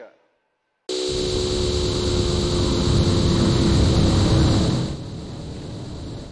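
A loud, steady rushing noise with a low hum under it from a cartoon soundtrack. It starts suddenly about a second in, swells a little, then drops back about five seconds in.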